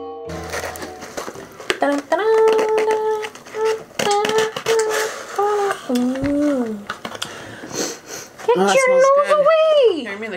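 A chiming music jingle cuts off right at the start. Then a cardboard box is handled and its flaps are opened with crinkling and clicking, under a woman's wordless sing-song voice in held and gliding notes.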